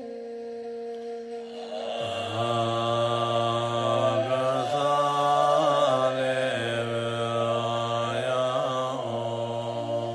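A man's low voice chanting a Tibetan Bon mantra solo. He holds long notes that step up and down in pitch, with short wavering turns between them, and grows louder after about two seconds.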